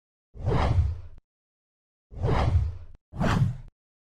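Three whoosh sound effects on the zoom transitions, each a short swell of rushing noise with a deep low end that cuts off abruptly. The first comes under a second in, and the last two follow close together near the end.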